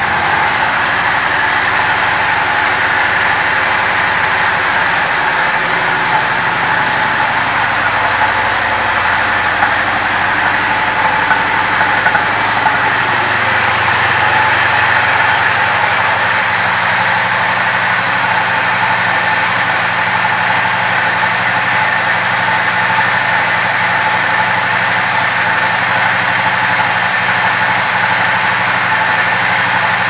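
Yamaha V-Star Classic's air-cooled V-twin engine idling steadily.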